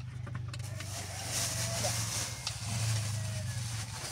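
A motor running with a steady low hum throughout, like a vehicle engine close by. A stretch of hiss rises over it about a second in and fades after a couple of seconds.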